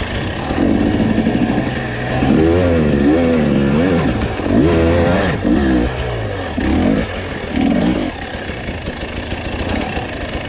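Dirt bike engine on the trail, the throttle opened and closed again and again so the engine note rises and falls in a string of revving bursts, settling to steadier running near the end.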